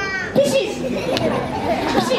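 A crowd of young children calling out and chattering together, many high-pitched voices overlapping.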